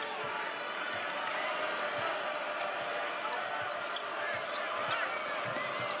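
A basketball being dribbled on a hardwood court, with occasional sneaker squeaks, over a steady arena crowd noise.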